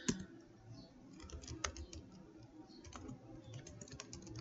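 Computer keyboard being typed on: a quick, irregular run of faint key clicks, with a sharper keystroke just after the start and another at about a second and a half.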